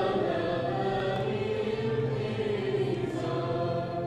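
Choir singing a slow communion hymn in long, held notes over a steady low accompaniment.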